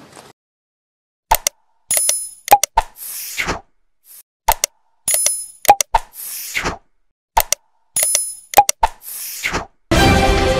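Subscribe-button animation sound effects: sharp mouse-like clicks, a bell-like ding and a falling swoosh, the set played three times over.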